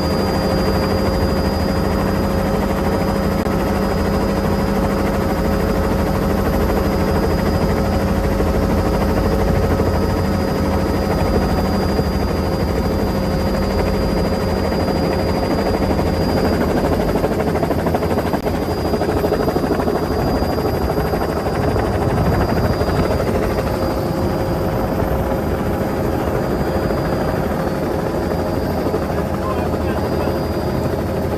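Helicopter engine and rotor running loud and steady, heard from inside the cabin as it descends and sets down on a lawn. Its low drone shifts about sixteen seconds in, as it comes down to the grass.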